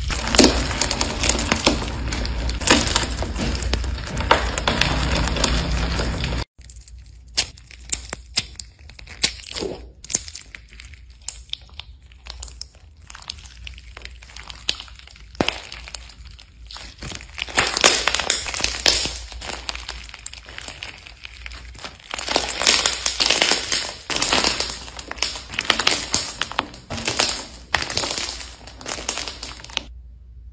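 Textured slime full of beads and crunchy bits being pressed, squeezed and poked by hand, crackling and popping. It is a dense, loud crackle at first, then after a sudden cut scattered quieter clicks and pops that build back into steady crunching about halfway through.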